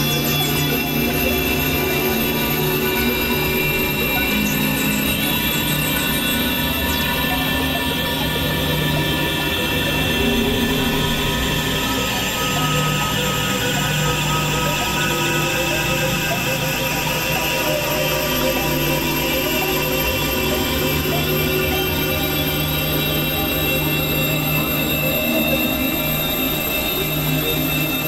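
Experimental electronic drone music: many sustained synthesizer tones layered from low to high, steady in level, with a low tone that swells and breaks off every few seconds.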